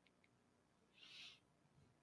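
Near silence: room tone, with a faint, brief high-pitched sound about a second in.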